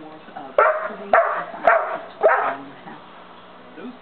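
St. Bernard puppy barking loudly four times, about half a second apart, then falling quiet: play barks aimed at a cat.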